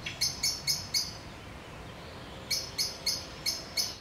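A bird chirping in two quick runs of short, high calls, about four a second, with a pause of over a second between the runs, over a faint outdoor hiss.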